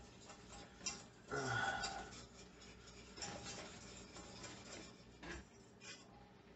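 Faint ticking and scraping of a metal utensil stirring a butter-and-flour roux in a small stainless steel saucepan, with a few sharper clicks against the pot.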